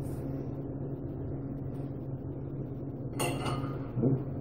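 Steady low room hum, then about three seconds in a brief scrape and clink of a metal spoon against a glass salsa jar.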